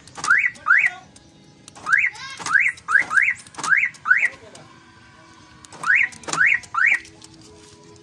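Aftermarket car alarm siren giving short rising chirps in three bursts: two at the start, a quick run of about seven in the middle, and three near the end. This is the newly installed alarm answering its remote being pressed, a function test of the installation.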